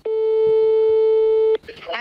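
Telephone ringing tone heard over a phone on speaker: one steady beep about a second and a half long that cuts off sharply, the sign that the call is ringing at the other end and not yet answered. It matches the French network's ringback tone.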